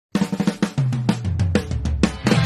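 Rock-style intro music opening with a rapid drum fill on snare and kick drum. About three-quarters of a second in, a low bass line enters beneath it and steps downward.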